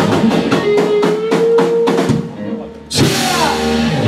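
Live rock band: a run of fast drum hits under a held electric guitar note. About two seconds in the band drops out briefly, then comes crashing back in together about three seconds in.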